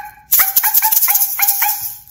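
A woman's voice yipping like a little dog, a quick run of short high yaps about five a second, over the hissing rattle of a hand shaker shaken fast from about a third of a second in.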